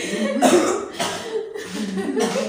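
A person coughing twice, about half a second apart, amid low voices.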